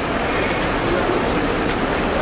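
Steady busy background noise: indistinct voices over a continuous rumble of road traffic.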